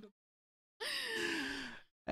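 A person's breathy sigh, falling in pitch and lasting about a second, after a short stretch of dead silence.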